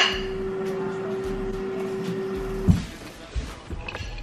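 A steady, even hum on one tone that stops with a click a little under three seconds in, followed by quieter room sound.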